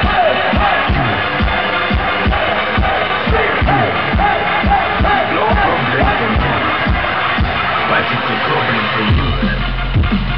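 Live electronic dance music played loud over a festival PA, with a driving kick-drum beat and swooping synth notes, and the crowd audible under it. Near the end the beat drops out for a moment and a deep, steady bass note takes over.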